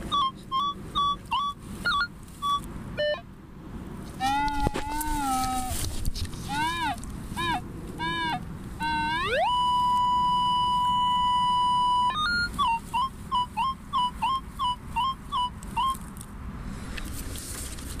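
Minelab Safari metal detector sounding target tones as the coil sweeps over a buried target. It starts with quick repeated beeps, then warbling and arching chirps. About halfway a tone glides up and holds steady for a few seconds, then the short repeated beeps return.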